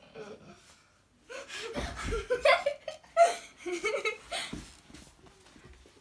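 A child laughing and giggling in several short, high-pitched bursts, with a low thud about two seconds in.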